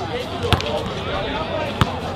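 Basketball dribbled on a hard outdoor court: two sharp bounces a little over a second apart.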